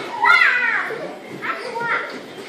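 Children's voices: a young child calling out in a high voice, twice in quick succession, in a room.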